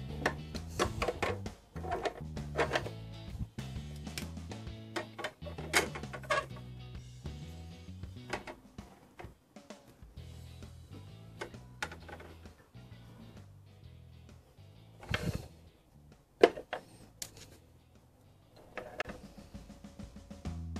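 Light background music with a steady bass line, over small plastic toy pieces clicking and knocking as they are set down in a plastic playset, two sharper knocks near the end.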